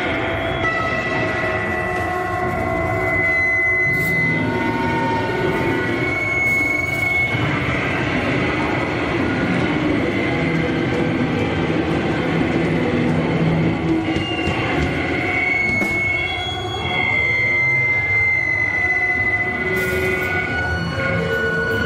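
Amplified feedback noise from a live band's rig: a loud, continuous wash of noise with high whistling squeals, each held for a few seconds before it shifts.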